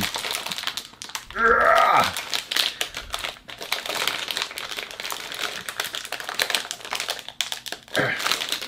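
Plastic candy wrapper crinkling with many small crackles as it is handled and pulled open by hand.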